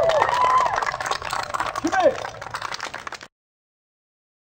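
A crowd applauding, dense rapid clapping mixed with a few voices calling out. The applause fades, then cuts off abruptly a little past three seconds in.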